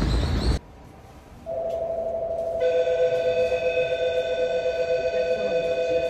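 Electronic departure warning signal on a train: a steady two-note buzzing tone starts about a second and a half in, and about a second later a higher steady ringing tone joins it. Both hold unchanged, with no melody.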